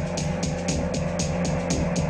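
Background film-score music with a quick, steady drum beat over sustained low tones.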